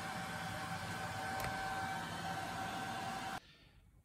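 Steady whirring hiss with a faint hum, as of a MIG welder's cooling fan running after welding; it cuts off abruptly near the end.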